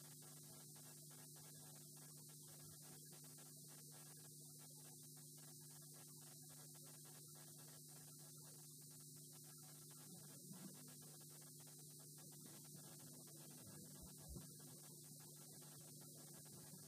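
Near silence: room tone with a faint steady electrical hum and hiss, and a few faint soft bumps in the last few seconds.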